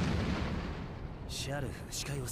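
A low, rumbling blast effect from the anime's soundtrack, dying away over the first second or so.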